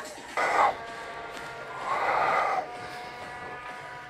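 A man breathing out forcefully twice while lifting a weight, a short exhale about half a second in and a longer, louder one around two seconds in, over faint background music.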